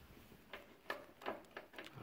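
Faint handling clicks and light knocks, about five scattered through two seconds, over quiet room tone.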